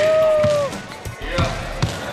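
A basketball being dribbled on a hard court: a few short bounces, mostly in the second half. At the start a voice holds a long shout of "hey".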